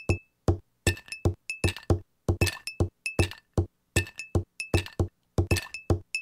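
A fast rhythmic beat of sharp clinking hits, about four a second, many ringing briefly like struck glass, over a faint steady low hum.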